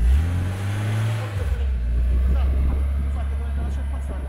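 A car engine revs up and drops back over the first second and a half, then runs on with a steady low rumble.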